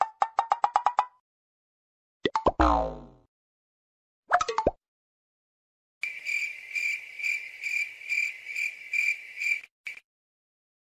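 Cartoon-style sound effects added in editing: a quick run of clicks, then a falling boing, a short blip, and finally a high beeping tone pulsing about twice a second for several seconds, with dead silence between the effects.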